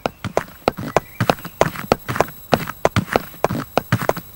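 Footsteps clicking on a pavement: a quick, even run of hard steps, several a second, with a second set of steps overlapping the first.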